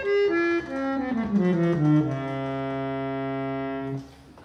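Free reeds of a c.1868 French harmonium, attributed to H. Christophe & Etienne, sounding the number three stop in the bass, a bright clarion at four-foot pitch: a run of notes stepping down, then a low note held for about two seconds that stops abruptly.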